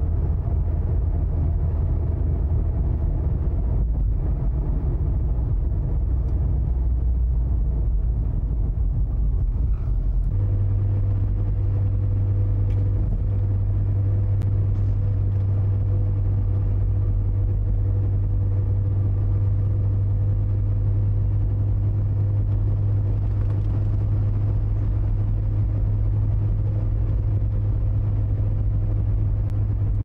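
Car engine and road noise from inside a moving car: a loud, steady low rumble that changes suddenly about ten seconds in to an even drone with a constant hum.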